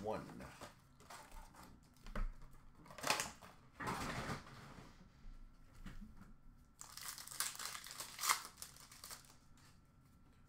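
Foil hockey-card pack wrappers crinkling and rustling in hand as packs are opened, in irregular bursts, with a busier stretch near the end.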